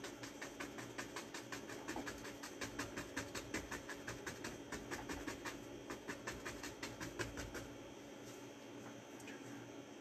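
A stiff bristle brush tapping oil paint onto a stretched canvas in quick, even dabs, stopping about eight seconds in. The dabbing builds up pine tree foliage.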